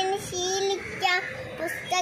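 A little girl singing lines of a Malayalam poem in long, steady held notes, with short breaks between phrases.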